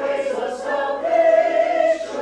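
A church congregation singing a hymn together without instruments, in parts, with a note held for about a second near the end.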